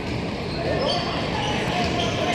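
Players' voices calling out over the echoing din of a large indoor sports hall as a flag-football play begins.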